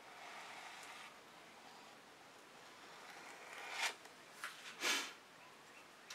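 A plastic card scraping softly across wet acrylic paint on a canvas for about a second. Near the end come two short rustles of the card being handled.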